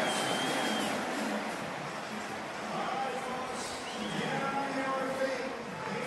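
Stadium crowd cheering a home run, a steady wash of voices and shouts with a few high whistle-like tones.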